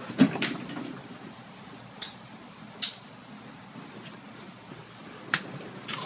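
Quiet room tone broken by a handful of light, scattered clicks and knocks, about six in all, the sharpest one nearly three seconds in.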